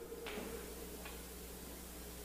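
Quiet room tone in a pause between spoken phrases: a low steady hum with a couple of faint ticks, one about a quarter second in and one about a second in.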